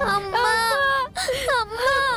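Young children crying and wailing: one long cry, a brief break about a second in, then another.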